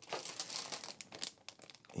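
Clear plastic bag crinkling and crackling as a bagged plastic model-kit sprue is picked up and handled: irregular crackles, busier in the first second and thinning out later.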